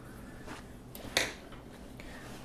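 Quiet room tone with a low hum, and about a second in one brief rustle of acrylic yarn being pulled through the crocheted stitches.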